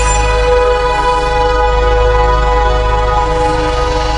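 Channel logo intro music: one loud chord held steady over a deep bass.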